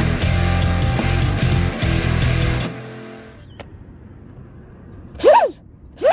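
Intro music that fades out about halfway. Near the end, a Traxxas 380 brushless motor on a boat is briefly revved out of the water, its whine rising in pitch and falling again.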